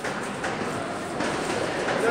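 Reverberant hall noise during an amateur boxing bout, with a few sharp, irregular knocks from the boxers' footwork and punches on the ring.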